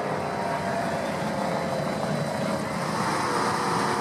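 Early-1970s Ford Mustang drag car's engine running steadily at low speed as the car rolls forward after its burnout, heading to stage at the line.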